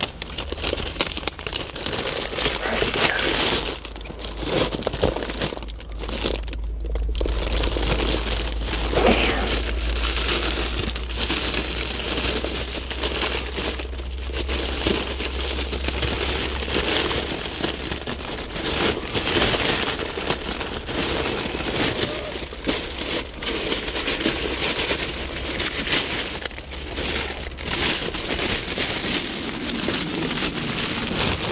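A plastic takeout bag and its paper contents crinkling and rustling steadily as they are handled and opened, over a low steady hum.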